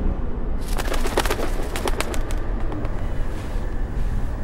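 Birds in woodland, with a quick run of sharp clicks in the first half over a steady low rumble.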